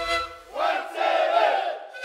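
A group of voices raising one long shout together, starting about half a second in, as the sustained tones of the sikuri panpipes die away.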